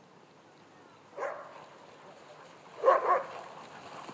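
Sled dogs barking as the team runs in harness: one bark about a second in, then a louder pair of barks near the end.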